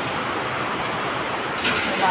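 Heavy tropical downpour: a steady rush of rain. It sounds duller for the first second and a half, then brighter.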